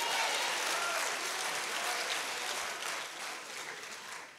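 Audience applause that dies away over the last second or so.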